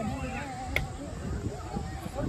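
People's voices: a drawn-out, wavering vocal sound in the first second, with one sharp click or clink about three-quarters of a second in, over background chatter.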